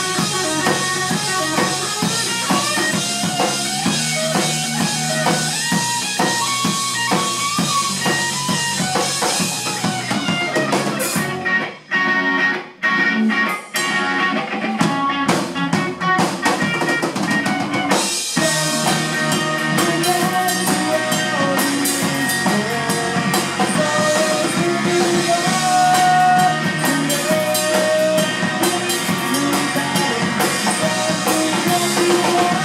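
Live rock band playing an instrumental passage on electric guitar, electric bass and drum kit. Around the middle the band breaks into a few short stop-start hits, then the full band comes back in.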